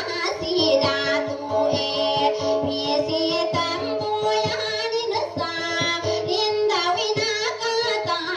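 Dayunday song: a high-pitched voice singing with vibrato over held accompaniment notes and a steady beat.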